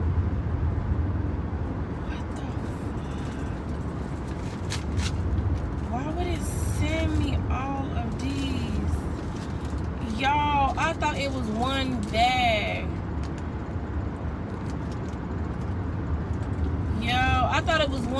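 Steady low rumble of road and engine noise inside a moving car's cabin, with a few sharp clicks and rustles from a small plastic package being handled early on.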